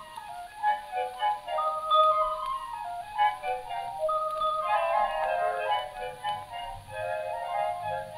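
Foxtrot intro played back from a 78 rpm shellac dance-orchestra record: a high, pure-toned melody line, with more instruments filling in about halfway through, over a faint steady record hiss.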